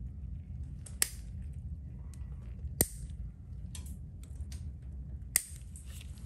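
Stainless steel nail nippers cutting through a thick, overgrown toenail: three sharp snaps about one, three and five seconds in, with lighter clicks of the jaws between, over a steady low hum.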